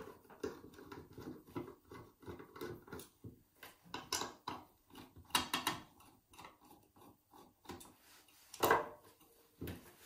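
Screwdriver backing small screws out of a steel lock case: scattered light metallic clicks and scrapes, with one louder click near the end.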